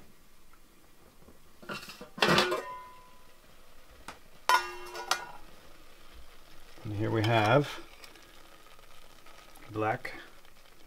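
A metal spoon clinking and scraping in a stainless steel cooking pot as boiled Good King Henry seeds are stirred and scooped out to check that they are done, with one clink ringing briefly about halfway through.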